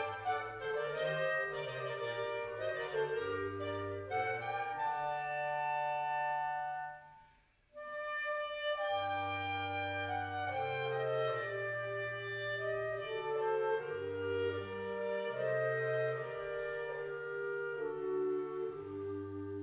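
Concert wind band of clarinets, saxophones and brass, tubas included, playing held chords over bass notes. The music breaks off for a moment about seven seconds in, then resumes.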